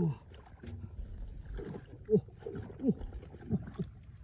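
Hands and a flat metal digging blade scraping and tearing through grass roots and soil, with faint crackling and rustling. From about two seconds in, a man gives several short falling 'oh!' exclamations.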